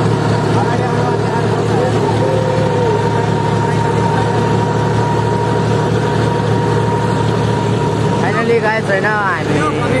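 John Deere 5050D tractor's three-cylinder diesel engine running steadily while the tractor drives along, with a thin steady whine over it. A voice calls out near the end.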